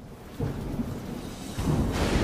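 Thunder sound effect: rumbling over a steady hiss, swelling about half a second in and again, louder, near the end as the lightning strikes.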